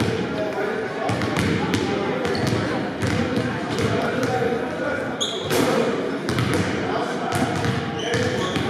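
Basketballs bouncing on a hardwood gym floor, a string of sharp knocks, over the chatter of voices in a large echoing hall. A brief high squeak comes about five seconds in.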